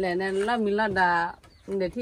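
A woman's voice speaking in a drawn-out, steady-pitched way for just over a second, then again briefly near the end.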